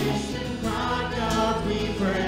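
Live worship band playing a song: strummed acoustic guitars and bass under several voices singing together.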